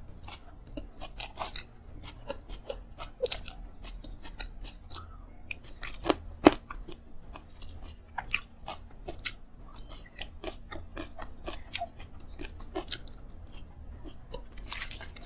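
Close-miked chewing and crunching of a mouthful of food eaten by hand, a steady run of small crisp mouth clicks. Two sharper crunches come close together about six seconds in.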